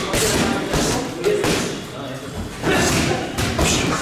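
Gloved punches landing on a heavy punching bag, a quick, irregular run of thuds.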